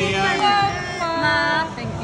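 A small group, mostly women's voices, singing a birthday song together around a dessert with a lit candle.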